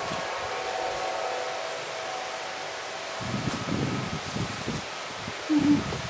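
Outdoor ambience: a steady hiss with faint steady tones, then low rumbling about three seconds in that fits wind on the microphone, and a short low sound near the end.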